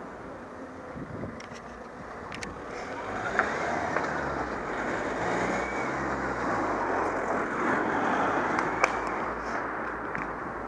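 Wind and road noise on a bicycle-mounted camera, growing louder about three seconds in as the rider picks up speed, with a car passing close by. A few sharp clicks and rattles come from the bike over the road surface.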